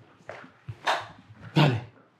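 A dog barking a few short times, the last bark the loudest.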